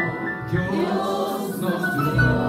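A small group of men's and women's voices singing a Christian song in Spanish together through microphones.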